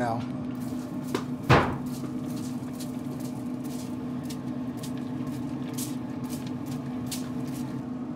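Trigger spray bottle spritzing apple juice onto smoking ribs in a string of short, irregular hisses, over the steady hum of a Traeger pellet grill running. One louder sharp knock comes about a second and a half in.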